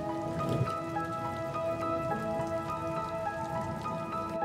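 Steady rain falling on hard wet paving, with many small drop hits, over soft ambient music of held notes. The rain starts right at the start and stops just after the end.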